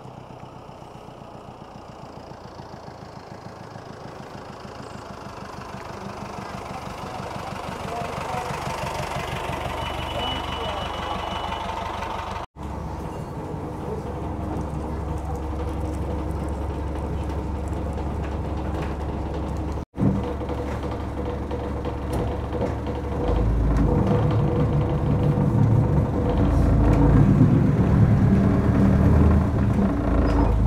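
Engine of a 1913 Daimler CC vintage bus, growing louder as it approaches and pulls up, then running under way. It is heard from the open top deck, with a heavy low wind rumble on the microphone near the end.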